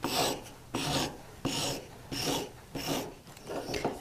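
Polishing paper on a stick rubbed back and forth over the tip of a metal bezel-setting burnisher: a rasping stroke about every 0.7 s, five or six in all. This is the fine smoothing of the tip after sanding, readying it for a high polish.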